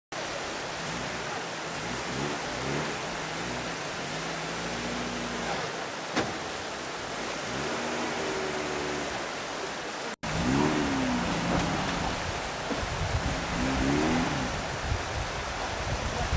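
Steady rush of a fast, rocky mountain river, with men's voices talking over it at times. There is a brief dropout about ten seconds in, and after it the sound is a little louder.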